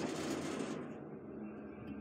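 Old Montgomery hydraulic elevator cab: a noisy rush from the doors slamming shut fades during the first second, leaving a low steady hum as the car runs.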